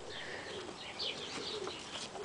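Birds chirping faintly in the background: scattered short, high calls.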